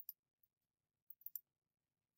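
Near silence with a few faint computer mouse clicks: one near the start and two close together just past the middle.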